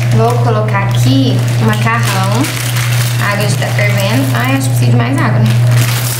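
A woman's voice talking indistinctly in short phrases over a loud, steady low hum.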